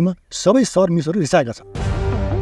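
A man speaking, then about three quarters of the way through a sudden loud dramatic music sting with a heavy low end comes in and holds.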